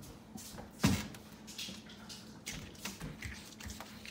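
A single dull knock about a second in, followed by faint small clatters and rustles of things being handled.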